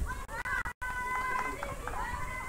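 People's voices over a football match broadcast, cut by three short dropouts in the sound within the first second.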